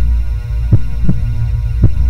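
A steady low electronic drone with heartbeat-like double thumps, a pair about once a second, as outro sound design.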